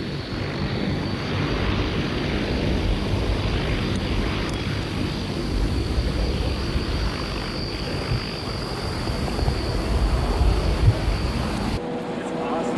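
Military jet aircraft's engines: a steady jet roar with a thin high whine on top as the jet approaches, growing a little louder near the end.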